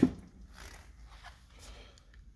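Quiet room tone with a faint steady low hum and a few faint, soft indistinct sounds, right after a spoken word ends.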